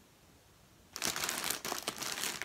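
A thin clear plastic bag crinkling as the large ball of yarn inside it is handled and turned, starting about halfway through.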